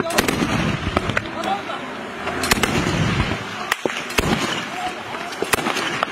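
Gunfire echoing over a town: about a dozen irregular shots, some in quick pairs, cracking from a distance.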